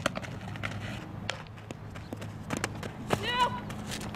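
Sharp knocks of a softball smacking into leather gloves during an infield fielding and throwing drill, with a short high-pitched voice call about three seconds in, the loudest moment.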